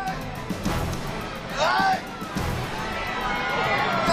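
Background music under raised voices of people struggling, with one loud shout about one and a half seconds in.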